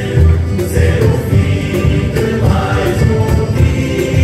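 A university tuna ensemble performing: a group of voices singing together over instrumental accompaniment, with a regular beat.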